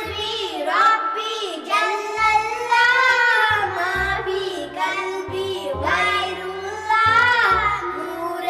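A high-pitched voice sings an Islamic devotional song (a naat) in long, ornamented held notes over a backing track with a low, recurring bass pulse.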